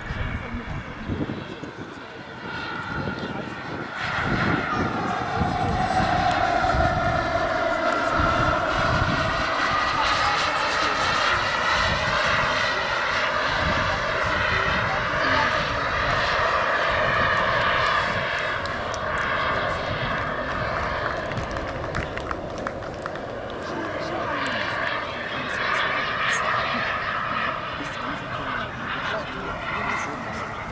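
Jet turbine of a giant-scale RC F-15 Eagle model in flight: a steady high whine whose pitch swoops down and up as the jet passes. It grows louder about four seconds in and is loudest through the middle, easing somewhat later on.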